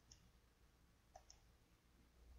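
Near silence broken by a few faint clicks of a computer mouse: one at the start and two in quick succession about a second in, as a slide is advanced.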